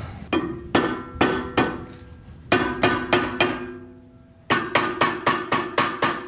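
Hammer blows on a seized rear brake rotor of a 2015 Jeep Wrangler, each strike setting the rotor ringing with a metallic tone: four spaced blows, four more, a short pause, then quicker blows about four a second near the end. The rotor will not come off the hub because the parking brake is still on, its shoes pressing against the rotor's hat.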